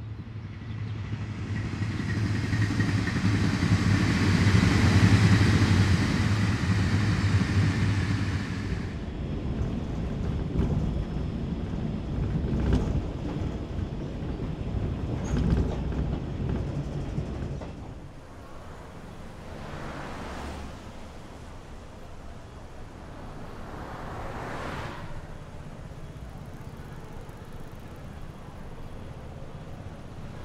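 A train passing close by, building to a loud rush with a low steady hum about five seconds in and cutting off near nine seconds. Then the lower rumble of a moving train carriage heard from inside, with a few sharp clicks of wheels over rail joints. That gives way to a quieter steady background with two soft swells of noise.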